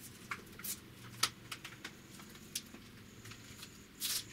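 Light clicks and knocks of plastic being handled as a handheld vacuum and its hose are taken down off a mount, with the vacuum not running. There are about half a dozen sharp ticks, the loudest about a second in.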